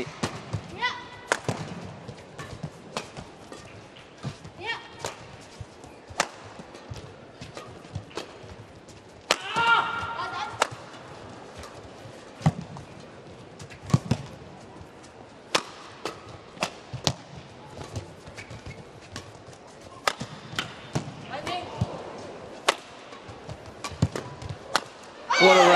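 Long badminton rally: a feathered shuttlecock struck back and forth by rackets, with a sharp hit about every second. A player shouts as he smashes, loudest about ten seconds in, over a low hum from the arena crowd.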